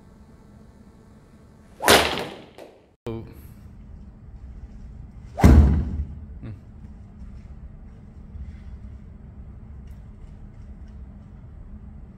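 Golf driver striking a teed ball off a hitting mat: a sharp crack about two seconds in and another about five and a half seconds in, each fading quickly. The sound drops out briefly between the two.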